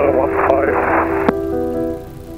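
Aviation radio voice transmission heard through the aircraft intercom, narrow and hissy with a low hum under it, cutting off about a second in. Background music with steady held notes plays underneath throughout.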